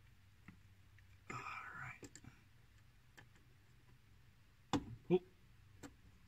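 Hand work on a car's aluminium hood release handle: a few faint clicks and a short scraping rustle, then two sharp clunks near the end as the handle is tried.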